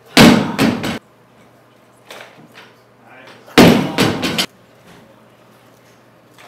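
Loaded barbell with rubber bumper plates dropped onto a wooden lifting platform, landing with a loud bang and bouncing a few times. A second drop follows about three and a half seconds later, just as loud.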